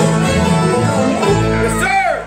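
A bluegrass band playing the closing bars of a song, with banjo, acoustic guitar, fiddle and upright bass, settling onto a held final chord in the second half.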